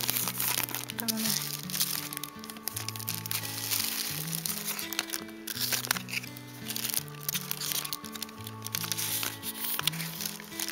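Clear plastic packaging crinkling and rustling under handling, over background music of held low notes that change step by step.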